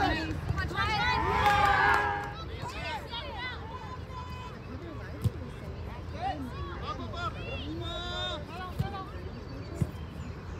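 Sideline spectators shouting and calling out, loudest for about a second soon after the start, then scattered voices. A few short sharp knocks come near the middle and toward the end.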